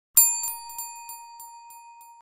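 A bell sound effect: one bright ding about a tenth of a second in, ringing on and fading, with a few fainter re-strikes spaced about a third of a second apart.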